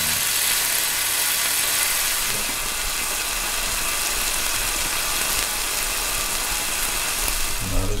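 A thin slice of Sendai beef sizzling steadily on a hot grill plate.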